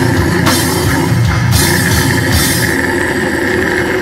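Heavy metal band playing live: distorted guitars, bass and drum kit, with cymbal crashes about once a second that stop about three seconds in, leaving the guitars ringing.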